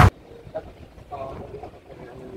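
Electronic music cuts off abruptly at the very start, leaving the quiet background of a large hall: a low rumble with faint, indistinct voices.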